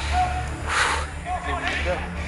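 Faint men's voices calling out across an outdoor football pitch, over a steady low rumble.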